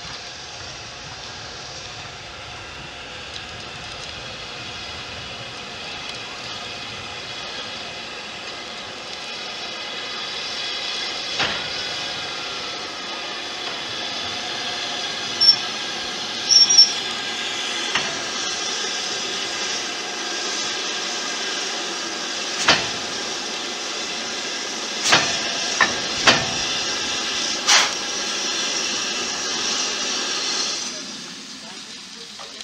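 BR Standard Class 5MT 4-6-0 steam locomotive 73082 moving slowly at close range, with a steady hiss of escaping steam that grows louder. Several sharp metallic clanks come in the second half.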